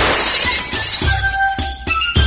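A glass-shattering sound effect: a sudden crash with breaking glass rattling on for about a second, then cartoon end-credits music with a steady beat.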